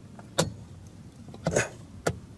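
Two sharp clicks of a switch being flipped, about a second apart, with no air compressor motor starting up. The compressor stays silent because its taped cigarette-lighter plug is not making contact.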